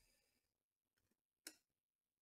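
Near silence, broken once by a short, faint click of trading cards being handled, about one and a half seconds in.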